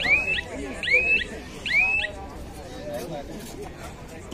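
Three short, high whistles about a second apart, each sliding up and then holding, over a background of crowd chatter.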